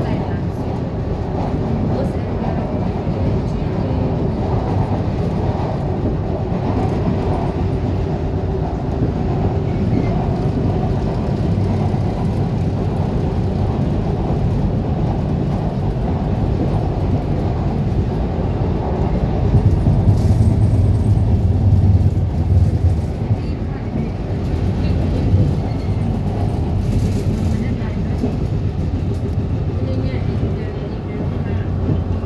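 A Kuala Lumpur MRT train running at speed on an elevated viaduct, heard from inside the cabin: a steady low rumble of wheels on rail and running gear. It swells louder for a few seconds about two-thirds of the way through.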